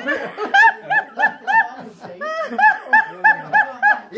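High-pitched laughter in two runs of quick, rhythmic 'ha-ha-ha' pulses, about four to five a second, with a short break about two seconds in.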